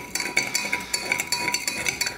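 Metal spoon stirring powdered iced tea mix into water in a tall drinking glass, clinking rapidly and repeatedly against the glass, which rings after the strikes.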